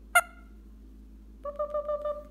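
Indian ringneck parakeet making one short, sharp chirp, then, about a second and a half in, a steady whistled note that wavers slightly as it is held.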